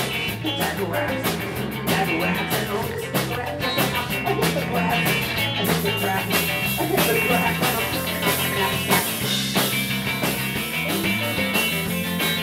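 Live rock band playing: electric guitars over a drum kit keeping a steady beat.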